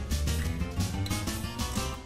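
Background music.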